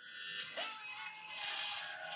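Film soundtrack heard through a tablet's speaker: orchestral score under a loud, noisy rush of sound effects, with a falling yell about half a second in.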